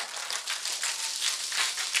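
Handling noise from a handheld microphone being shifted in the hand: a soft, dense crackling rustle of many tiny clicks.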